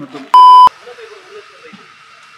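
A censor bleep: a single flat electronic tone at 1 kHz lasting about a third of a second. It cuts in sharply about a third of a second in and stops just as sharply, masking a spoken word.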